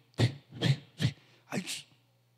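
A man making short, breathy vocal sounds close into a handheld microphone: four quick puffs about half a second apart.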